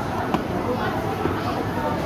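Background voices and chatter in a busy indoor public space, with one short knock about a third of a second in.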